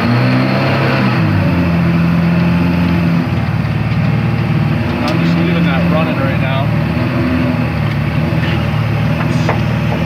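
Outboard jet boat motor running, its pitch stepping up and down as it is throttled against the trailer strap to take up the slack. It eases off a little about three seconds in.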